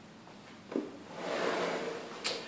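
Soft handling noise: a brief low knock about three-quarters of a second in, then a rustling brush through the second second.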